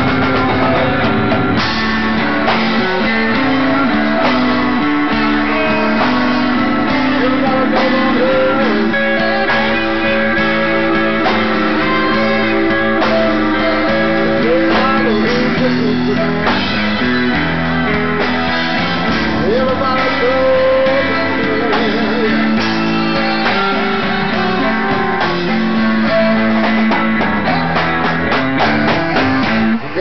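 Live blues band playing an instrumental break, the guitar most prominent, with lead notes bent up and down.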